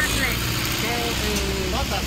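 Steady low hum of street traffic: vehicle engines running at a city intersection, with a voice heard over it.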